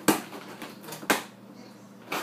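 Cardboard box flaps knocked about by a cat pushing in among them: two sharp cardboard knocks about a second apart.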